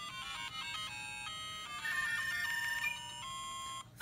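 LEGO Mario interactive figure playing a short electronic chiptune melody of stepped beeping notes from its built-in speaker. This is its end-of-course results tune while it tallies the coins. The melody cuts off sharply near the end.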